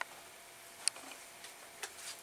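Three short, sharp clicks over quiet room tone, the loudest about a second in.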